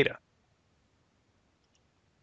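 Near silence after a spoken word ends, with one very faint click late on.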